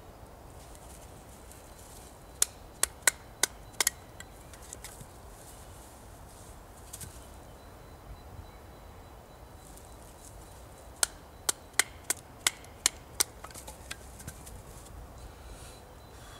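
Batoning with a Mora Outdoor 2000 knife: its spine is struck to drive the blade down through a standing stick of wood. The knocks come in two quick runs, about six a little over two seconds in and about seven more around eleven seconds in, a few strikes a second.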